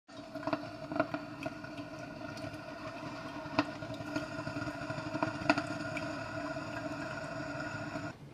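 Drip coffee maker brewing: a steady droning tone with irregular pops and sputters as the heated water boils up through the machine.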